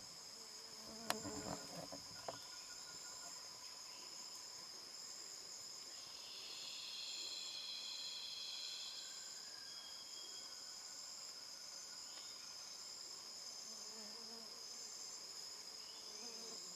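Steady high-pitched drone of a tropical rainforest insect chorus, with a louder buzzing band joining from about six to nine seconds in. About a second in, a sharp click followed by brief crackling.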